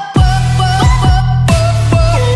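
Electronic dance music: punchy kick drums over a heavy, steady bass and a gliding synth lead. The track drops out for a moment at the very start, then comes straight back in.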